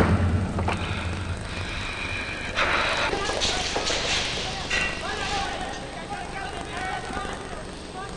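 Film soundtrack in the aftermath of a blast: a low rumble dying away, then a short burst of noise about two and a half seconds in. Faint vocal sounds follow, wordless.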